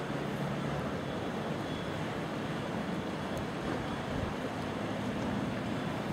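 Steady outdoor wash of wind and water, with a faint low hum underneath.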